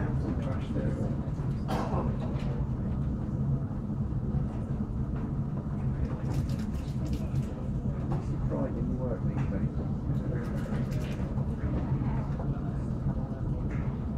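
Steady low mechanical hum, with faint talking over it in places.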